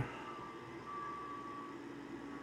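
Low, steady whir of a fume-extraction filter box and the laser engraver's fans running while the machine stands idle, with a faint thin high whine coming and going in the first half.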